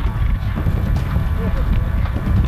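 A horse galloping on grass turf, its hoofbeats heard with faint voices in the background.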